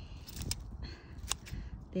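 Scissors snipping through garlic leaves: two sharp snips about a second apart.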